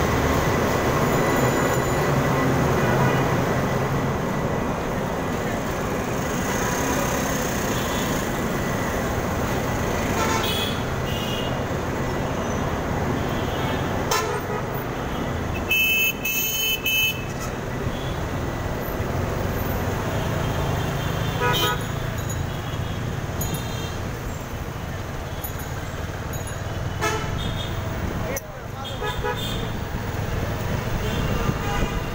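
Busy city street traffic heard from a moving vehicle: a steady din of engines and road noise, with horns honking now and then. The longest and loudest honk comes just past halfway, and shorter ones come later and near the end.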